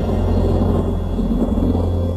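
Synthesized low rumble over a steady low drone, the sound effect of a DVD logo intro animation.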